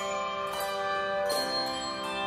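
Handbell choir ringing chords on brass handbells, with new chords struck about half a second in and again past the middle, the bells ringing on in between.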